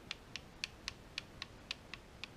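Ratchet wrench clicking in a quick, even run, about four clicks a second, as the cam gear bolts are run in before torquing.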